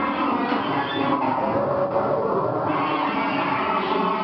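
Live harsh noise music: a dense, unbroken wall of amplified electronic noise that holds a steady loudness with faint sustained tones running through it.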